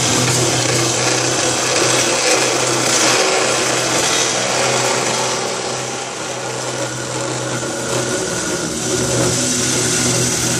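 Circular cold saw cutting through 3-inch DOM mild steel driveshaft tubing: a steady motor hum under the continuous sound of the blade cutting the metal.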